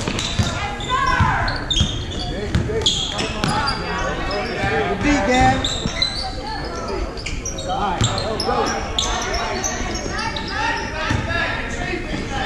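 Basketball bouncing on a hardwood gym floor as players dribble, with repeated sharp knocks, amid sneaker squeaks and spectators' voices echoing in a large gym.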